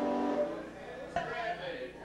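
A guitar's final chord ringing out and fading in the first half second, then a single knock about a second in and people talking.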